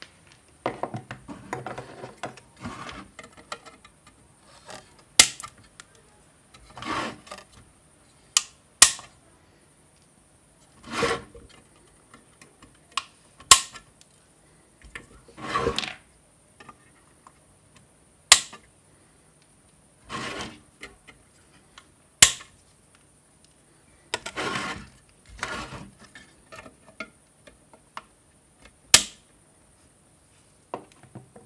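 Hands handling the metal case of an ATX power supply and small hardware: scattered sharp clicks and knocks, about six of them, with bursts of rubbing and scraping in between.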